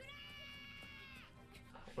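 A faint, held high-pitched tone from the anime episode's soundtrack, lasting just over a second and dipping in pitch as it ends.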